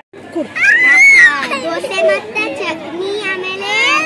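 A young girl's high-pitched voice talking excitedly, her pitch rising and falling, after a brief gap at the start.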